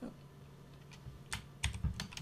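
Computer keyboard keystrokes: a single key press at the start, then a quick run of four or five keystrokes in the second half.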